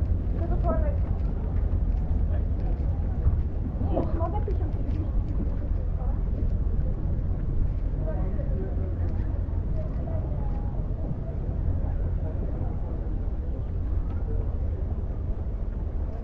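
Scattered chatter of passers-by, with short bits of nearby talk, over a steady low rumble.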